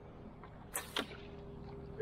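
Bowfishing shot from a recurve bow: two sharp cracks about a quarter second apart as the arrow is loosed and flies off on its line, followed by a faint steady tone.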